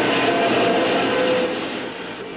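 Wood lathe running while a hand-held gouge cuts the spinning wood: a steady noise with a hum in it, easing off a little about one and a half seconds in.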